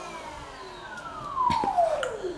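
Pressure washer switched off, its motor winding down in a steadily falling whine. A couple of short knocks come about a second and a half in.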